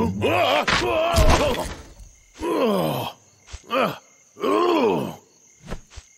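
A cartoon bear's voice groaning and grunting without words, four times: one long groan, then three shorter ones, with a few faint knocks in between.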